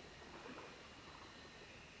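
Faint, gentle lapping of calm river water at the shore, with soft irregular splashes over a quiet background hiss.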